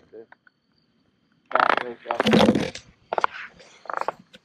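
Mostly speech: one short spoken exclamation, "Boy," about a second and a half in, after a quiet stretch, with a few brief sounds near the end.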